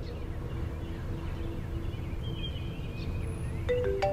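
Steady low hum with small birds chirping. Near the end, a phone's marimba-style ringtone starts playing.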